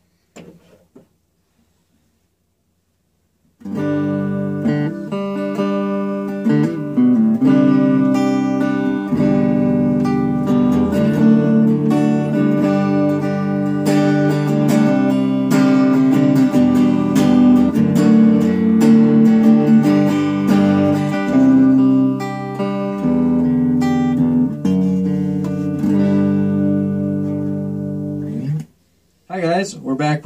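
Gibson Les Paul Studio on its P90 neck pickup, played through a First Act M2A-110 10-watt practice amp with a 7-inch speaker. After a few seconds of quiet, electric guitar notes and chords ring out steadily and stop shortly before the end.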